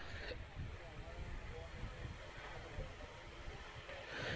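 Faint outdoor background noise: a low steady rumble with faint, indistinct distant voices and no distinct bat-on-ball hit.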